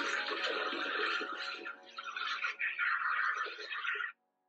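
Hissing rush of water spray and broken ice as a kiteboarder crashes through thin lake ice, with a short dip about two seconds in.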